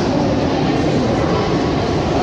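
Steady rumble of a metro train in an underground station, echoing around the hall.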